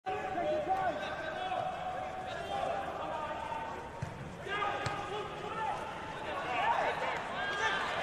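Football players' shouts and calls on the pitch of an empty stadium, with the ball struck sharply twice, about four seconds in and again just before five seconds.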